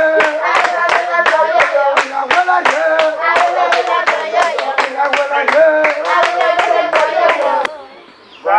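A group of women clapping in steady rhythm, about three to four claps a second, while singing a chant-like song together. The clapping and singing stop a little before the end.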